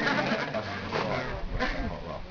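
People laughing in a few short bursts, fading toward the end.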